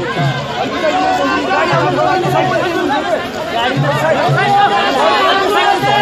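A dense crowd of many people talking and calling out at once in a loud, close hubbub.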